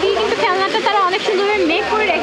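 People talking over a steady background din.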